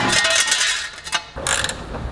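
Wrench working a nut on a car's front suspension knuckle: a rapid mechanical rattle for about the first second, then stopping, followed by a few short clicks.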